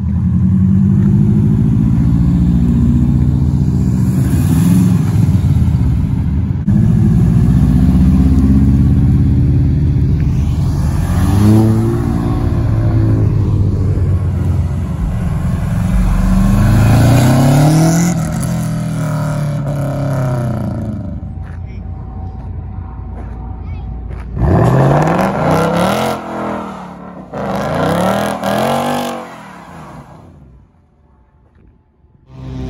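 Car engines revving again and again, rising and falling in pitch. Near the end comes a run of short, loud rev bursts from a Ford Mustang spinning its rear tyres in a smoky burnout.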